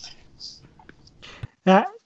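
A short pause in conversation holding only faint breathy sounds, then a man's voice starts with "uh" near the end.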